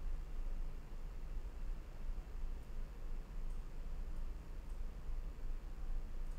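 Quiet room tone: a steady low hum with faint hiss and a few faint ticks.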